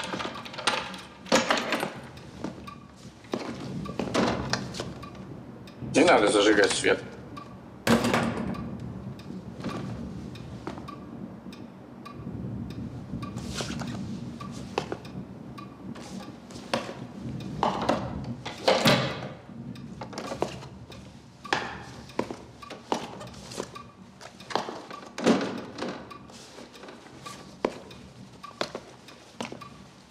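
A series of scattered knocks, thuds and clicks from a door and from people moving about in a dark room, with a few short voice sounds in between.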